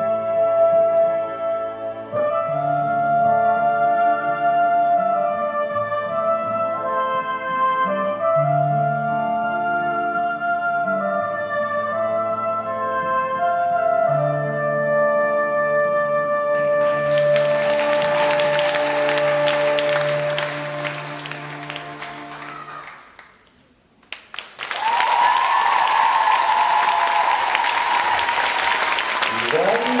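Routine music with held, woodwind-like melodic notes. Audience applause swells in over it about two-thirds of the way through. The music fades out and after a brief drop the applause comes back loud, with cheering and a voice calling out near the end.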